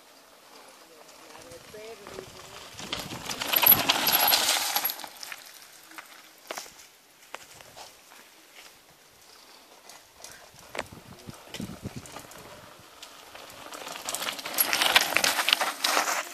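Mountain bike tyres rolling past over dry leaves and dirt, a crackling, crunching rush that swells to a peak about four seconds in and again just before the end, with a few sharp clicks between.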